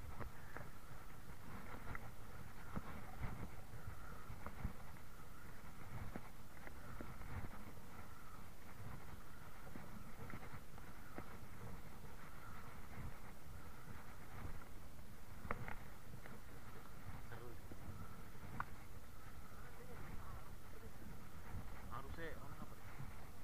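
Wind buffeting the microphone over open sea while a spinning reel is wound in on a popper retrieve, with scattered sharp clicks and knocks, the sharpest about fifteen and a half seconds in.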